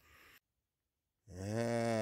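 Dead silence for about a second, then a man's voice comes in on a long, drawn-out sound that runs into speech.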